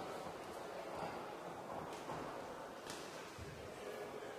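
Low background murmur of a sports hall during an amateur boxing bout, with a few faint knocks.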